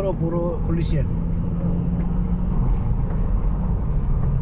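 Car cabin noise while driving along a highway: a steady low rumble of road and engine with a constant hum. A short bit of voice comes in the first second.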